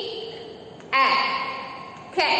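A woman's voice sounding out the short phonic syllable "ick" about a second in, with a long, echoing tail. The fading echo of the previous "ick" fills the start.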